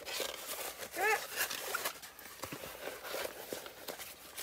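Glossy plastic film on a rolled diamond painting canvas rustling and crinkling as the canvas is unrolled and handled, with small crackles throughout. A brief pitched sound that rises and falls comes about a second in.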